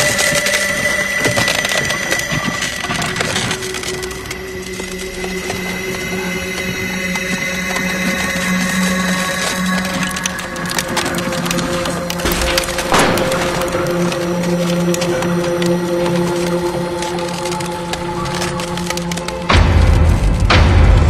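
Dramatic film score of long held notes, with scattered crackling and snapping effects laid over it and a sharper crack about thirteen seconds in.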